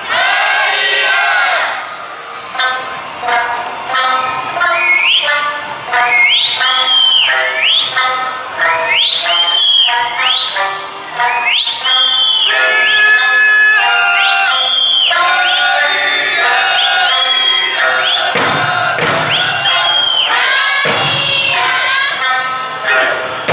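Okinawan eisa music: a singer with sanshin over a loudspeaker, with high rising calls about once a second through the middle and heavy eisa barrel-drum (ōdaiko) beats near the end.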